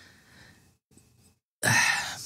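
A person's loud breath drawn in near the end, after a short moment of near silence.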